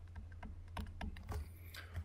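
Faint, irregular tapping and clicking of a stylus writing on a graphics tablet, over a steady low hum.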